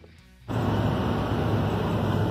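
Steady, loud rumble and road noise inside a moving city bus, cutting in abruptly about half a second in.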